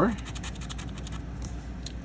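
A plastic scratcher tool scraping the coating off a lottery scratch-off ticket in a quick run of short, rapid strokes.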